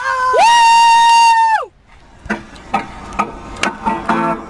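A voice belting one long high sung note for about a second and a half, ending in a falling glide, then a few short knocks and clicks.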